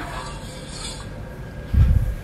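A spoon stirring sauce in a stainless steel saucepan, with faint scraping and light clinks against the pan, and a short low thump near the end.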